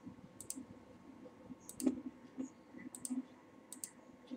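A few faint computer mouse clicks, most coming in quick pairs about once a second.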